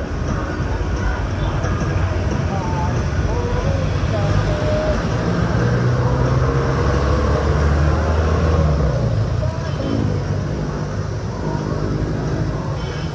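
Traffic noise from a moving bicycle on a wet city road: steady rumble of road and wind, with car and motorcycle engines alongside. It swells as a vehicle engine passes close, about six to nine seconds in.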